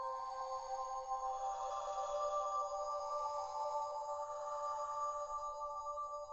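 Ambient electronic music: a held synthesizer chord of steady tones that glides to a new chord about a second in and then sustains.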